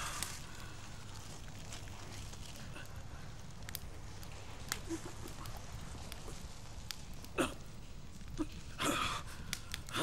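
Quiet room tone with a steady low hum, a few faint scattered clicks and rustles, and a short breath-like sound near the end.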